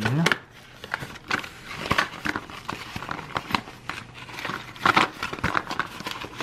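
Paper and thin cardboard crinkling and scraping as a cardboard advent calendar door is pulled open and the small item inside is handled, in irregular short crackles.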